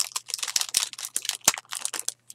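Plastic packaging crinkling and rustling in rapid, irregular crackles as small ribbon bows are taken out of it, with one sharper click about one and a half seconds in.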